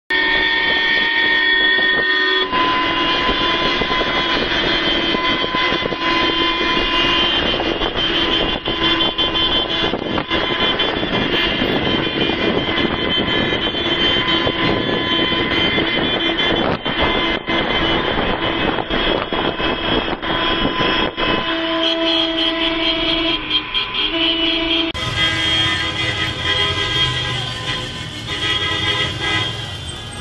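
A convoy of taxis sounding their car horns, many horns overlapping in long held tones almost without a break, with traffic noise beneath.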